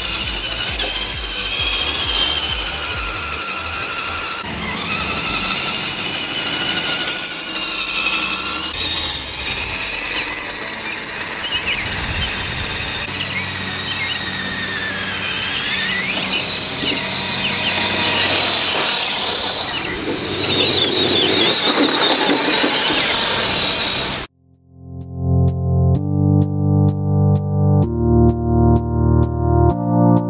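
Axial SCX10 Trail Honcho RC crawler's electric motor and gears whining as it drives, the pitch rising and falling with the throttle, over background music. About 24 seconds in the sound cuts out and synth music with a steady beat begins.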